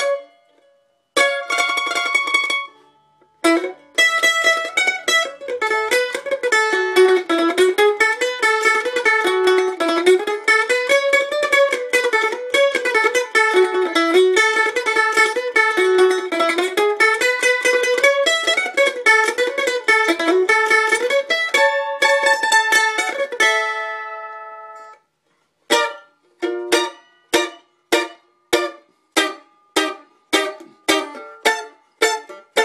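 A-style flattop mandolin with a cherry body and red spruce top, played with a pick: a few ringing chords with short breaks, then a long passage of fast picking with a melody rising and falling. A last chord rings out to silence, and after a short pause chords are struck about once a second.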